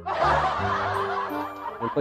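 Recorded laughter sound effect played from the laughter button of a V8 live sound card. It starts suddenly and runs for about two seconds over background music.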